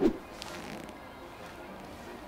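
Soft background music during a pause in speech, with the end of a spoken word right at the start.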